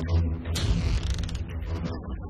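A noisy whooshing sound effect swells and fades between about half a second and a second and a half in, over a steady low bass from the background music.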